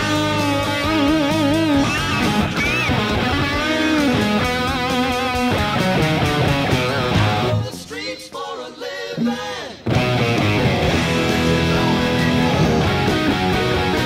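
Electric guitar lead playing on a 2014 Gibson Les Paul R9 (1959 reissue) through a Boss Katana Head MkII amplifier: sustained single notes with wavering vibrato and string bends. About seven and a half seconds in the playing drops quieter and sparser for a couple of seconds, then comes back in full.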